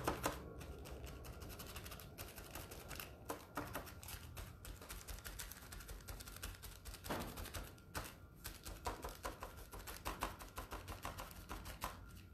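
Wadded plastic dabbed repeatedly onto a painted surface to apply paint: quick, irregular light taps with a few short pauses.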